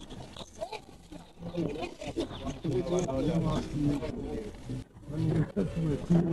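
Men's voices talking and calling out loudly, with a few short knocks.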